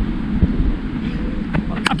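Wind buffeting the microphone, a steady low rumble, with a short spoken word right at the end.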